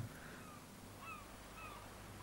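Faint bird calls: a run of short falling notes, a few a second.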